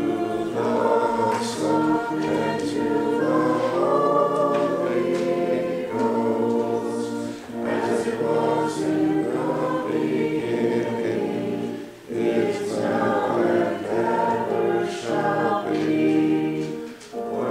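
A church choir singing a sacred piece in sustained, phrased lines, with short breaks between phrases about seven and a half and twelve seconds in.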